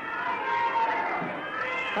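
A person's drawn-out, wavering voice: one long hesitating sound without clear words, its pitch slowly bending.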